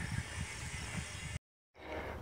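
Faint outdoor background noise on a phone microphone, with a few soft low knocks. About one and a half seconds in, it breaks off into a split second of total silence at an edit cut, then the faint noise returns.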